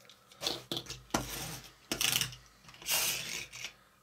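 Miniature plastic pull-back toy car handled on a plastic track: four or five short ratchety whirrs and scrapes with light clicks, separated by quiet gaps.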